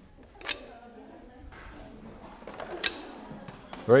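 Long-handled loppers cutting side branches off a Christmas tree trunk: two sharp snaps, about half a second in and again near three seconds.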